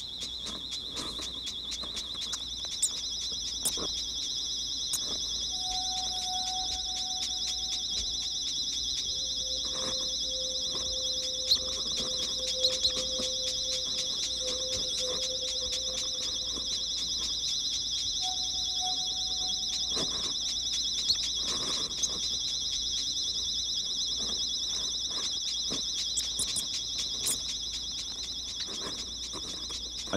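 Two continuous high-pitched trills hold steady pitches throughout. The second, higher trill joins about two seconds in. Faint ticks and a few brief low tones sound underneath.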